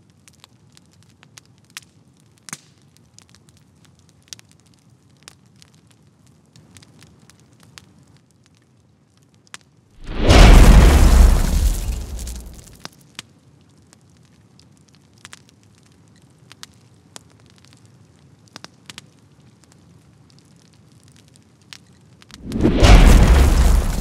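Edited-in graphics sound effects: faint scattered crackles throughout, with one loud deep boom and rushing whoosh about ten seconds in that fades away over a couple of seconds.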